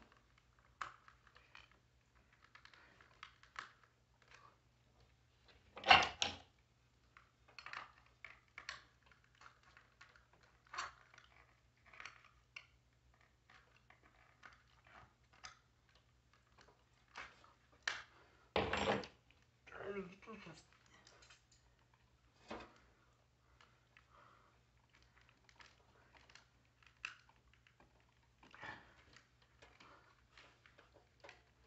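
Scattered plastic clicks, scrapes and knocks of a ceiling smoke alarm being twisted and pried at its mounting base, partly with a thin metal tool. Two much louder knocks come about six seconds in and just before the nineteen-second mark.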